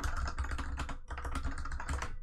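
Fast typing on a computer keyboard: a quick, continuous run of key clicks.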